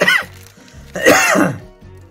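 A man coughing twice with a harsh throat-clearing cough, the second longer than the first; he has a cough and says he is unwell. Soft background music runs underneath.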